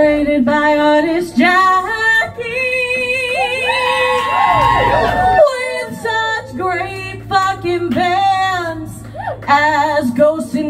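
A woman singing live into a microphone through a PA, holding notes with vibrato, with a low steady tone underneath.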